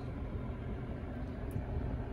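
Steady low rumble inside a 2018 Mazda3's cabin, with the engine idling and the ventilation fan running after being turned down.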